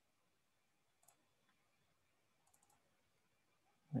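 Near silence with faint computer mouse clicks: one about a second in, then a quick run of about four a little after halfway.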